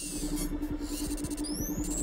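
Synthesized sci-fi computer-interface sound effects starting suddenly out of silence: a rapidly pulsing low hum under high electronic chirps, with rising electronic sweeps about one and a half seconds in.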